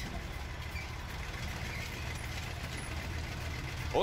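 Engine of the Soviet Object 279 experimental heavy tank running with a steady low rumble.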